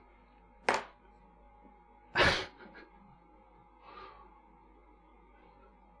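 A man's short breathy bursts of laughter: a quick one about a second in, a louder, longer snort-like one about two seconds in, and a faint breath near four seconds, over quiet room tone.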